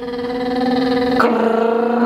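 A child's voice holding one long, steady-pitched note, a very happy noise made in answer to being asked if he is happy. The vowel changes about a second in.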